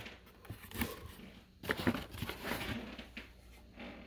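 Cardboard box and packaging being handled: scattered rustles, scrapes and light knocks as a battery pack is lifted out.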